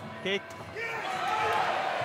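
Mostly voices: a commentator's brief word, then other voices calling out in the hall, with a light thud or two about half a second in.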